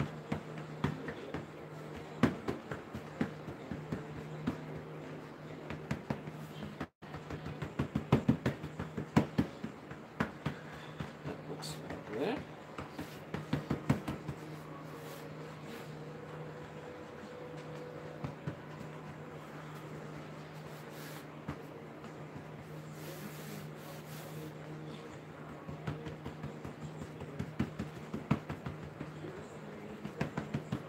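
Hands patting and pressing soft doughnut dough on a floured countertop: irregular clusters of soft slaps and taps, busiest in the first half and near the end, over a steady low hum.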